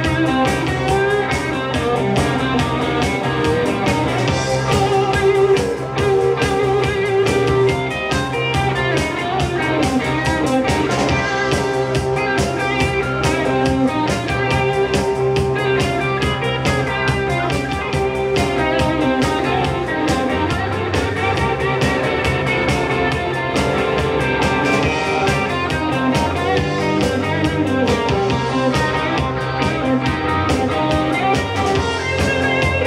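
Live rock band playing an instrumental stretch with no vocals: electric guitars over bass guitar and a drum kit, running on without a break.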